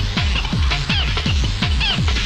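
Fast electronic rave dance music from a DJ mix: a steady four-on-the-floor kick drum whose pitch drops on each beat, with repeating high synth stabs above it.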